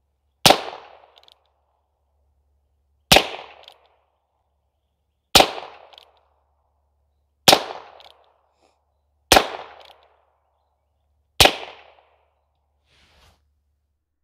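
Six shots from a Heritage Barkeep Boot single-action revolver in .22 LR, fired one at a time about two seconds apart. Each is a sharp crack that dies away within about a second.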